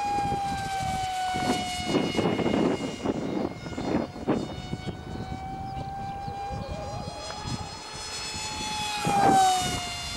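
Electric motor and pusher propeller of a FunJet RC model jet whining at a steady high pitch in flight; the pitch sags slightly, then swells louder about nine seconds in and drops. Several short bursts of rushing noise come and go in the first half.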